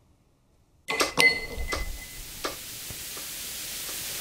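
A glass tumbler being handled on a hard table: a few sharp clicks and knocks, one of them a short ringing clink, then a faint steady hiss.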